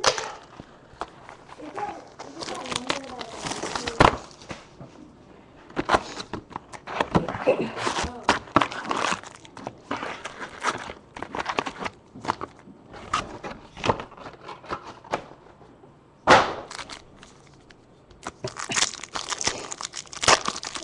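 A hobby box of trading card packs being torn open and the foil packs ripped and handled: irregular crinkling, tearing and clicking, with two sharp snaps, one about four seconds in and one near sixteen seconds.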